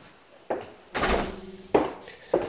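Three short knocks indoors, roughly half a second apart, the middle one the loudest.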